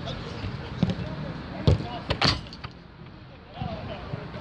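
A football being kicked during a five-a-side game: three sharp thuds, the loudest two about half a second apart near the middle, with players' voices in the background.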